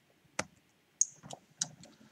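About five sharp clicks from working a computer's mouse and keys: one about half a second in, then a quick cluster in the second half.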